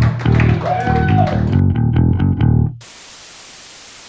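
Live punk band playing loudly, bass and electric guitar to the fore. The music cuts off suddenly near the end, giving way to a steady hiss of static.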